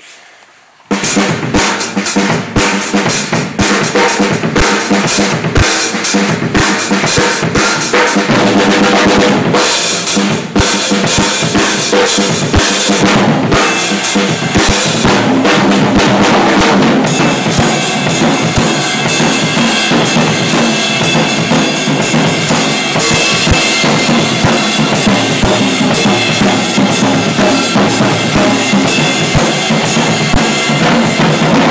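Mapex Mydentity maple-shell drum kit played in a continuous groove starting about a second in: bass drum, snare and toms struck with sticks under cymbals. From about seventeen seconds on, the cymbals wash more steadily over the drums.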